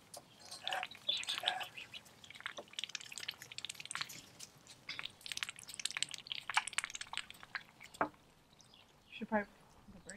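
Water dripping and splashing into a shallow plastic kiddy pool as wet greens are lifted and dangled over it, a quick run of small irregular drips.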